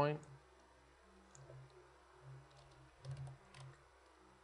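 Faint computer mouse clicks and keyboard key presses, a few scattered clicks with a small cluster near the end.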